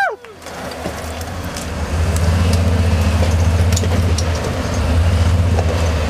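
Rock crawler buggy engine running steadily under load as the buggy climbs a vertical rock ledge, its low note swelling about two seconds in and holding, with scattered light knocks over it.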